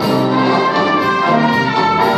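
Live brass band playing an instrumental passage in held, changing chords.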